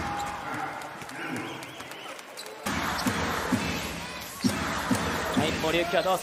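Basketball being dribbled on a hardwood court, heard as short bounces at a steady rhythm over arena crowd noise. The crowd sound jumps abruptly louder about three seconds in.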